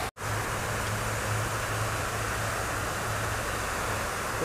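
Steady hiss of a pond's spray fountain with a low, even hum beneath it. The sound cuts out for a moment at the very start.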